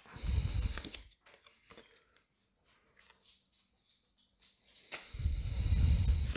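Pokémon trading cards handled in the hands, the cards rubbing and sliding against each other: a rustle in the first second, a near-quiet stretch with a few faint ticks, then a building rustle near the end as the stack of cards from the pack is handled.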